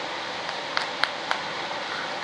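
Steady background hiss of a running fan, with three light clicks about a second in.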